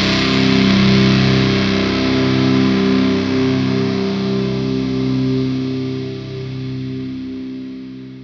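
Stoner/doom metal band's distorted electric guitar chord ringing out and slowly fading away, the last chord ending a song.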